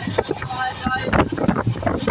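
Passenger train in motion, heard from inside the carriage by an open window: a steady low rumble under dense, irregular rattling and clatter, with wind on the microphone. Two brief high tones sound a little before the middle.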